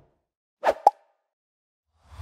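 Two quick pops a fraction of a second apart, about two-thirds of a second in: sound effects of an animated logo sting.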